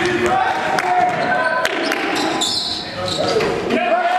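Basketball game sound in a gym: a ball bouncing on the court, sneakers squeaking in short bursts as players cut, with players' voices mixed in.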